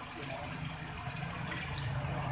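Kidney pieces and freshly added tomato slices sizzling in oil in a steel kadai over a gas flame, a steady hiss, with a single light click near the end.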